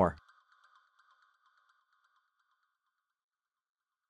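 A narrator's voice finishing its last word just at the start, then near silence with a very faint thin hiss that fades out about three seconds in.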